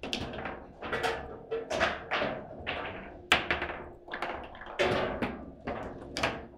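Table football in play: an irregular run of sharp plastic knocks, about one or two a second, as the ball is struck by the rod figures and rebounds off the table walls, the loudest about three seconds in.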